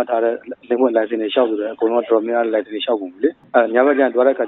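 Speech only: a person talking steadily over a telephone line, the voice thin and narrow-sounding, with no other sound to be heard.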